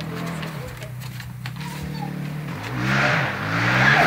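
Dirt bike engine running steadily, then revving up and getting louder about three seconds in.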